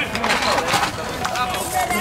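Men's voices calling out on the pitch during an amateur football match, with one drawn-out call in the second half, over open-air background noise.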